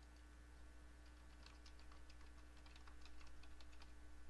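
Faint, quick, irregular clicking typical of typing on a computer keyboard, starting about a second and a half in, over a low steady hum.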